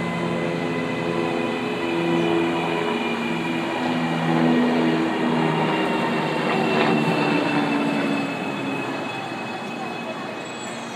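CAF-built CPTM Série 8500 electric train pulling into a station platform, its cars running past close by as it slows. A steady high whine sits over lower humming tones that shift in pitch.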